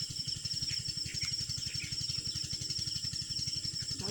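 Outdoor pond-side ambience: an insect's steady high-pitched trill, a few faint bird chirps, and a low throb pulsing about a dozen times a second underneath.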